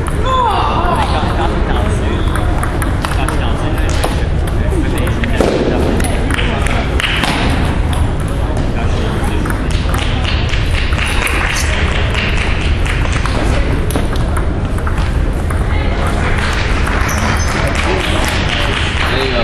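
Table tennis ball clicking off rubber paddles and bouncing on the table in short rallies, with background chatter in a reverberant hall and a constant low rumble.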